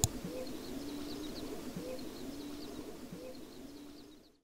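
A dove or pigeon cooing: the same low phrase, a short rising-and-falling note then a longer held one, three times about a second and a half apart. Small birds chirp faintly in the background, and the sound fades out at the end.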